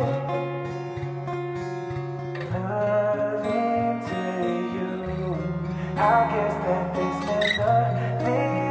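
Music: the song plays on, led by plucked acoustic guitar, with chords changing every few seconds.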